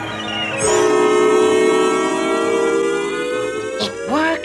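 Electronic siren-like ray sound effect of a cartoon time-stopping beam. About half a second in it swoops down in pitch, holds a steady whine, then slowly rises near the end.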